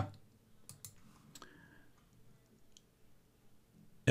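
A few faint computer mouse clicks within the first second and a half, in otherwise quiet room tone.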